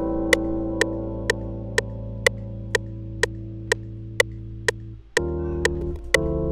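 Rhodes-style electric piano (Analog Lab 5 Clean Mark V preset) holding one long chord, then moving to a new chord about five seconds in. A short sharp click marks every beat, about two a second.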